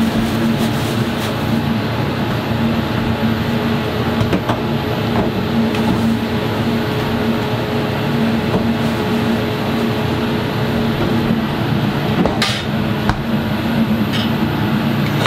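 Steady mechanical drone and hum of commercial kitchen equipment running, with a few light knocks and a sharper click about twelve seconds in.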